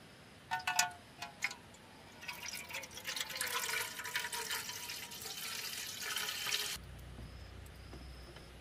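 A few short metallic clinks from a metal cooking pot, then water poured in a thin stream into the pot for about four and a half seconds. The pouring cuts off suddenly.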